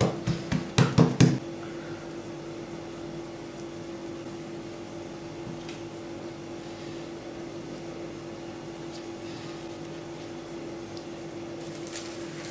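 A steady hum with one constant tone and a faint even hiss underneath, after a short stretch of speech at the very start.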